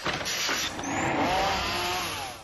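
Circular saw cutting through a wooden board, its motor whine rising in pitch about a second in.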